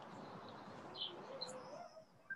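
Faint steady hiss with a few short, high bird-like chirps about halfway through; the hiss cuts off just before the end.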